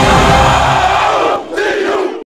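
A team of football players shouting together in a tight huddle, a loud group chant, with a brief break about one and a half seconds in and then one last shout.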